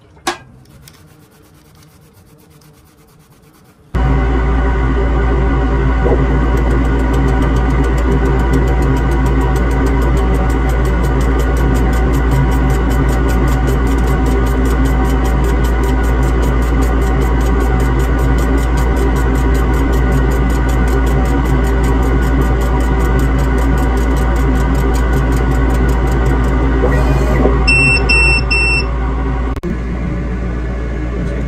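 Background ambient synthesizer music: a loud, steady drone that starts suddenly about four seconds in, with a quick run of high beeps near the end.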